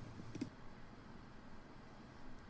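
Faint background hiss with a few soft clicks in the first half-second.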